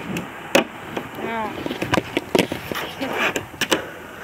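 Fingerboard clacking against a tabletop during a trick attempt: a string of sharp clacks, the loudest about half a second in and a quick pair near the end.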